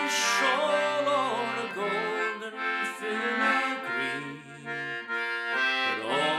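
Wheatstone Maccann duet-system concertina playing a folk tune in held chords, the reeds sounding the same note on push and pull. The notes change every half second or so, and the playing briefly thins about four and a half seconds in.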